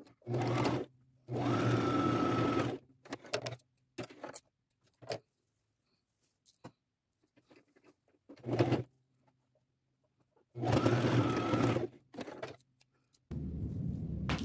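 Brother sewing machine stitching in four separate runs, two short and two of about a second and a half, stopping between them while the ruffle fabric is pinched into pleats. Faint handling clicks fall in the pauses.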